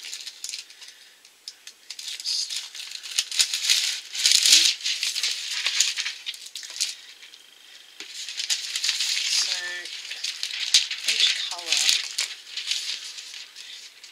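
Thin metallic transfer-foil sheets crinkling and rustling in irregular bursts as the Jones Tones nail-foil pack is opened and a sheet is unfolded by hand.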